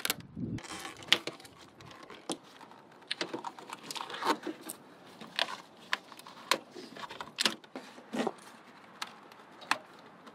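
Irregular light clicks and rattles of a corrugated plastic wire loom and wiring harness being handled and pressed into place by hand.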